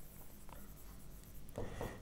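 Faint scratching and light tapping of a stylus writing on an interactive smartboard screen, with one small click about half a second in.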